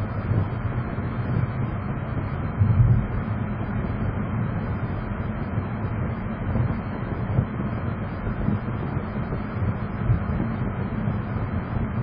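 Steady road and engine noise inside a car's cabin as it drives along and picks up speed. A brief louder rumble comes about three seconds in.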